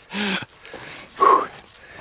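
A man's brief laughter: a short voiced sound at the start, then a quick breathy burst a little after a second in.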